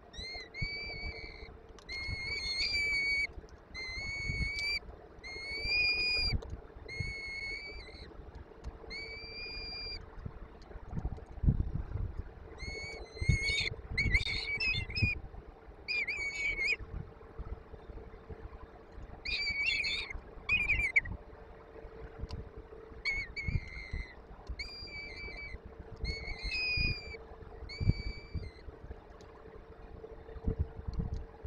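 Peregrine falcon nestlings giving food-begging calls during a feeding: a string of drawn-out, high, slightly arched calls, each under a second, repeated every second or two with a short pause midway. A steady low hum and soft bumps of movement in the nest box lie underneath.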